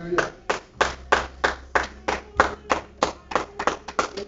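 Hands clapping in a steady rhythm, about three claps a second, quickening slightly near the end.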